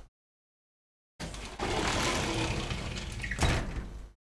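A steady rushing, hiss-like noise, about three seconds long, that starts suddenly a second in, swells near the end, and cuts off sharply.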